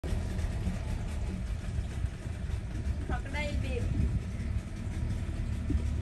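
An engine idling with a steady low rumble, and a person's voice briefly about halfway through.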